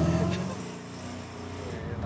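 Engine of a 1960s MGB roadster driving along, a steady low four-cylinder hum. It drops away in the middle and comes back up near the end.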